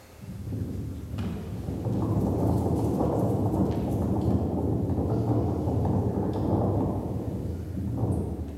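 Low, steady rumbling noise that swells in over the first two seconds and then holds.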